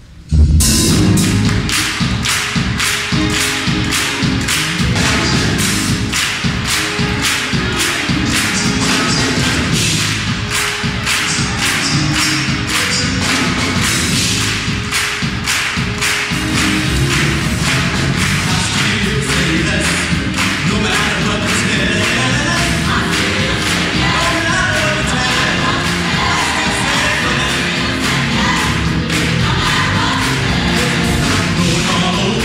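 A gospel choir and band strike up suddenly about half a second in: drums keep a steady beat under the choir's singing, with hand clapping from the singers.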